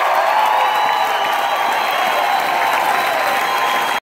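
Congregation applauding and cheering steadily, many voices calling out over the clapping.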